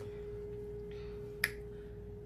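A satin headscarf rustling softly as it is untied, with one sharp click about one and a half seconds in, over a steady hum.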